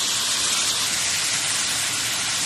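Waterfall pouring into a rocky pool, a steady rushing hiss of falling water.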